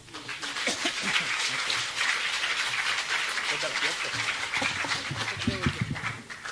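Audience applauding for about five seconds, with a few voices faintly heard under the clapping, which thins out near the end.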